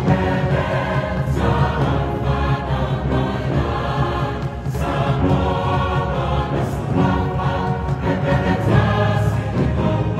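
Large choir singing live with orchestral accompaniment of brass and hand drums, with occasional sharp drum hits, in a reverberant concert hall.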